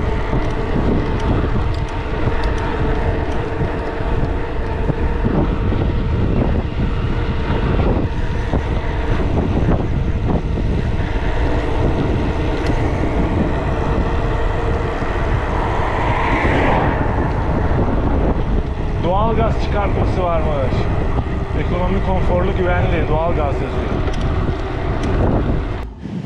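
Wind rushing over the microphone with tyre noise from a loaded touring bicycle rolling steadily along an asphalt road, a loud, continuous rumble.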